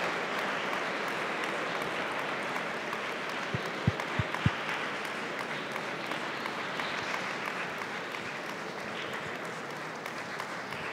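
Audience applauding at the end of a lecture, a steady even clapping that slowly dies down. A few short low thumps come about four seconds in.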